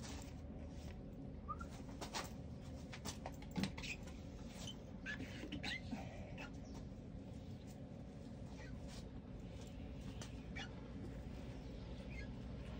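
A rubber squeegee blade and a cloth working on window glass: short scattered squeaks as the blade drags across the pane, with soft rubbing and light clicks.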